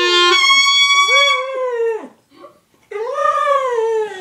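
A dog howling at a clarinet: two long howls, each rising and then falling in pitch, with a short pause between. The first starts just as a held clarinet note cuts off.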